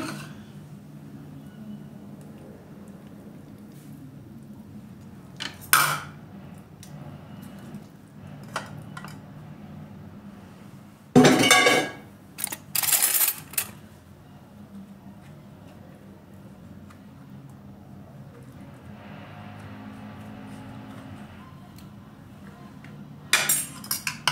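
A metal fork clinking and scraping against a ceramic bowl as avocado flesh is scooped into it, with a few sharp clatters: one about six seconds in and a louder run around eleven to thirteen seconds in.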